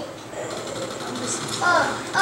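A boy's voice grunting a loud "uh, uh" near the end. Under the build-up before it runs a fast, faint rattle.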